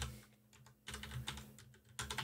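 Typing on a computer keyboard: a sharp click at the start, then a quick burst of keystrokes from about a second in.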